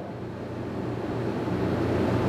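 Steady rushing noise with a low hum, slowly growing louder.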